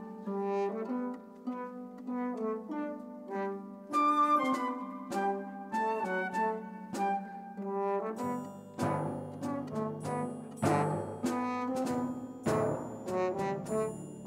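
Symphony orchestra playing a lively dance tune led by brass. About eight seconds in, a low bass line and regular beats join in.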